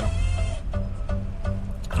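Music playing from a car radio inside the cabin, a pause between speech: short, held notes repeat over a steady low bass.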